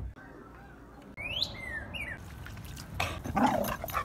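Dogs playing: a high-pitched dog whine that rises and then falls about a second in, followed by louder, rougher dog noises near the end.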